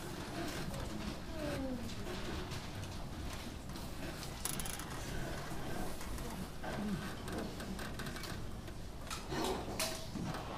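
Hall room noise in a pause before a jazz band plays: faint murmuring voices and rustling, with a couple of sharp clicks or knocks, about halfway and again near the end. No music is playing.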